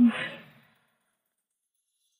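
A brief murmured "mm" of assent that trails off into a breathy sigh, fading out about half a second in, followed by dead silence.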